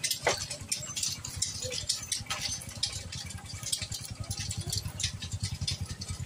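Large wooden crosses dragged along a concrete road, their ends scraping and clattering irregularly, over a motorcycle engine running close by that grows louder in the second half.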